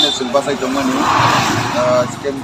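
A man speaking, with the noise of a vehicle passing on the road, loudest around the middle.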